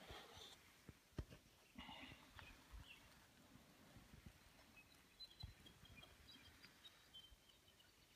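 Near silence in the forest. Faint handling rustles and knocks come in the first few seconds, with one sharp knock about a second in. Faint, short, high chirps of small birds follow in the second half.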